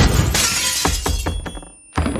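Window glass shattering in a forced breach, with sharp clinks of falling pieces that fade out near the end.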